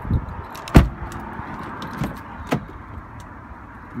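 BMW X6 car door being handled and shut: one loud thud a little under a second in, with a few lighter clicks and knocks around it, over steady background noise.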